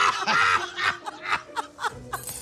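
A man and a woman laughing together, the laughter breaking into quick short chuckles about halfway through.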